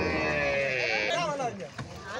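A cow bawling: one long call that falls slowly in pitch and stops about a second in, followed by men's voices.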